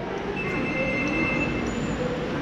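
Busy railway-station hall background noise, with a steady high-pitched squeal-like tone for about a second in the middle.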